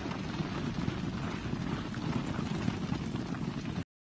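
Steady low rumbling background noise with no distinct events, cutting off abruptly near the end.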